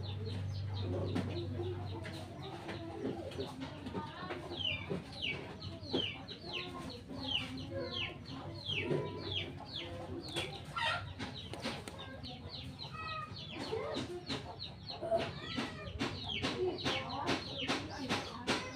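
Birds calling: runs of short high chirps, each falling in pitch, about two a second, with scattered light clicks and rustles of plastic pots and soil being handled.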